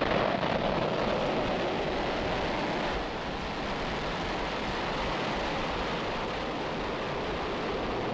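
Falcon 9 rocket lifting off, its nine first-stage Merlin engines firing at full thrust: a dense, steady rumble of exhaust noise. It is loudest just after liftoff and eases a little about three seconds in as the rocket climbs away.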